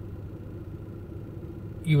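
Steady low hum inside a parked car's cabin, the engine idling. Speech starts again near the end.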